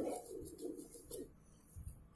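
A bird cooing faintly, pigeon-like, with low wavering calls in the first second or so.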